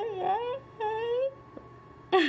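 A woman's high-pitched voice making two drawn-out, wavering vocal cries, each about half a second long, the second ending a little past a second in.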